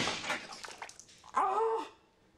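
A man's short, wavering whimpering cry, about half a second long near the end, preceded by light clattering and rustling at a washbasin.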